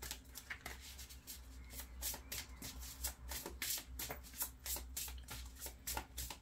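A deck of oracle cards shuffled by hand: an irregular run of quick crisp card flicks and slides, several a second.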